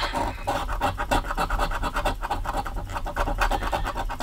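A coin scraping the coating off a scratch-off lottery ticket in rapid, repeated strokes as the winning numbers are uncovered.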